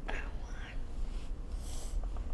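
Quiet, breathy whispering with a short hiss of breath near the end, over a low steady room hum.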